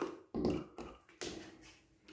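Four or five short, soft taps and rustles from hands handling a door and the steel extension spring hooked to it.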